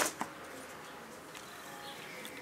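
Quiet outdoor garden background with a single light click just after the start.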